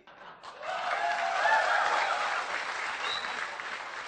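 Audience applauding in a hall, building about half a second in and dying away toward the end, with faint voices from the crowd.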